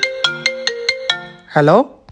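Mobile phone ringtone: a quick melody of bright, separate notes that stops about a second and a half in, as the call is answered with a rising "Hello?".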